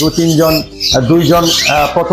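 Caged parrots and other pet birds squawking and chirping in the background while a man talks.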